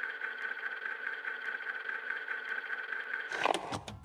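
A steady hum made of several held tones over a light hiss, with almost no bass, that cuts off about three and a half seconds in, followed by a couple of faint clicks.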